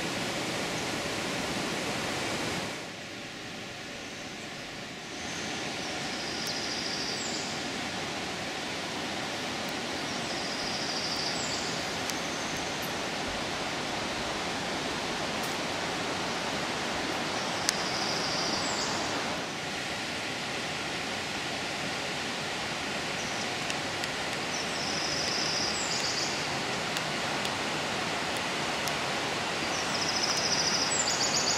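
Steady rush of white water from the Alcantara river flowing through its basalt gorge, dipping quieter for a couple of seconds about three seconds in.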